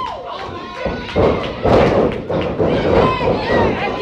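Heavy thuds of wrestlers' bodies and stomps hitting the wrestling ring canvas, several in a few seconds, under commentary voices.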